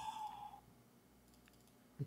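Near silence in a room: a faint steady tone fades out in the first half second, then one faint click about a second and a half in.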